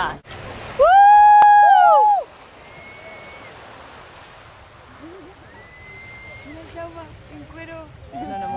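A loud, high-pitched scream held for about a second and a half, with a second voice joining near its end, over the wash of sea water. Fainter voices follow later.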